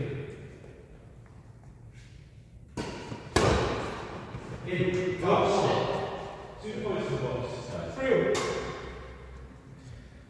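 Two sharp smacks of a badminton racket hitting a shuttlecock about half a second apart, about three seconds in, with another hit later, among men's voices echoing in a large sports hall.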